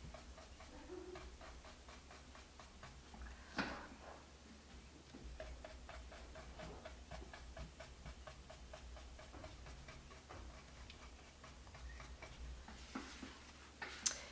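Faint, quick ticking, about four ticks a second, over a low steady room hum, with one louder click about three and a half seconds in.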